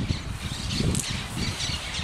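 Outdoor rural ambience: an irregular low rumble of background noise, with faint bird calls and a brief high chirp about a second in.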